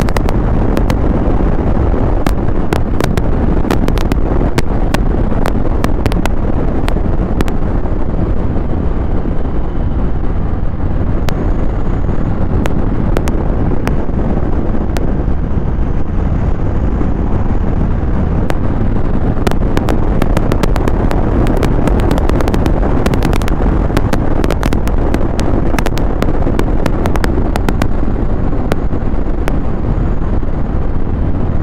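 Harley-Davidson Low Rider S's Milwaukee-Eight 114 V-twin running at a steady cruising speed, heard under heavy wind buffeting on the microphone, with frequent crackling pops from the wind hitting the mic.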